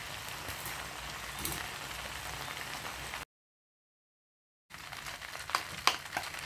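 Cellophane noodles, meat and vegetables sizzling in a wok: a steady hiss that breaks off into complete silence for about a second and a half, then comes back with a couple of sharp knocks of the spatula against the pan near the end.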